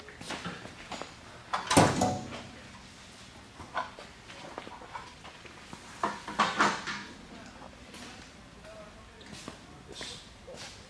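The removable sheet-metal access panel of a test bench cabinet being taken off and handled, with metal clunks and rattles: a loud clunk about two seconds in and another run of knocks a little past halfway.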